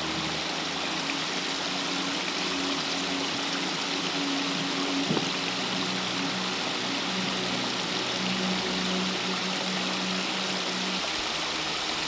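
Small rocky mountain stream running steadily over stones, an even rush of water.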